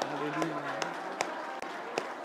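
Congregation praying aloud together, many voices overlapping, over a steady beat of sharp taps or claps, about two and a half a second. A man's voice sounds briefly in the first second.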